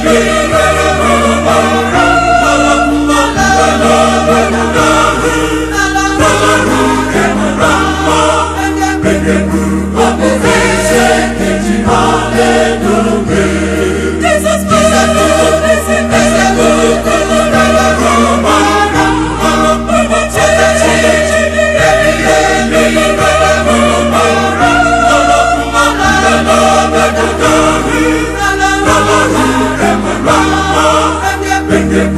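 Mixed church choir singing an Igbo gospel song in harmony, over low bass notes that change about once a second.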